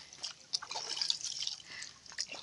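Shallow water in a concrete irrigation ditch splashing and dripping in small, irregular splashes as a toddler is bathed and moves about in it.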